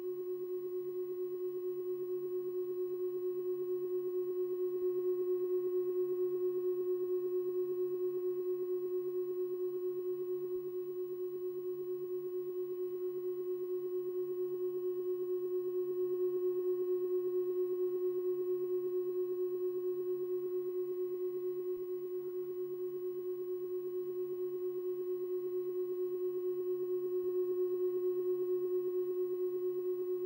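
A steady electronic drone: one strong sustained tone with a few fainter tones above and below it, unbroken throughout and swelling gently in loudness about every ten seconds.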